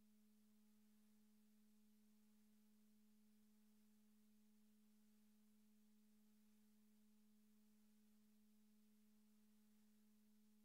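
Near silence with only a very faint, steady low hum and a fainter higher overtone, unchanging throughout.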